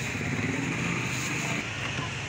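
Steady rumble of passing street traffic, with no single event standing out.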